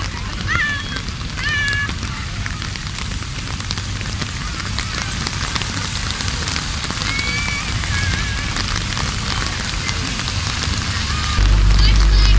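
Steady hiss of heavy rain and of slow cars' tyres on a wet road, with a few short high chirps twice. Near the end a loud low rumble starts abruptly.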